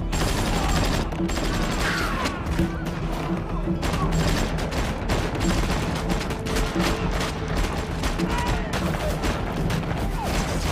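Shootout gunfire in a film: rapid, dense shots fired back and forth, packed closely together, over a steady music score.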